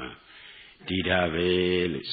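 A male monk's voice preaching in a drawn-out, intoning style: a brief pause, then one long held, chant-like phrase near the end.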